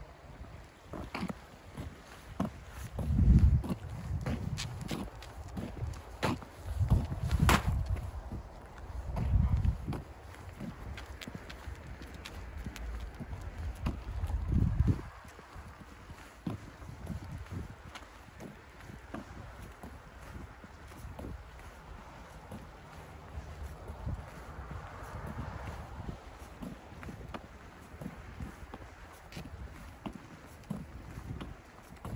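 Wind gusting on the microphone in several low swells, loudest in the first half, with scattered crunching steps in snow.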